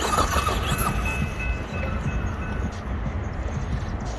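Electric RC truck's motor whining as it drives over loose gravel, with gravel crunching under the tyres; loudest in the first second, the whine fading out a little past halfway. A steady low rumble lies underneath.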